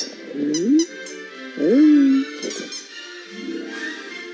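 Cartoon toy-alien voices calling 'ooh' twice, each call rising in pitch, the second longer and held at the top, over orchestral menu music.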